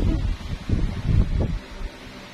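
Wind buffeting the microphone: loud, irregular low rumbling gusts that die away just before the end.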